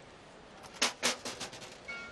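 Faint open-air stadium ambience, broken just over half a second in by a quick run of five or six sharp knocks over about a second, the second of them the loudest. Steady tones begin right at the end as music starts.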